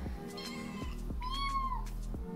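A cat meowing once, a single call about half a second long that rises and then falls in pitch, starting a little past a second in, over background music.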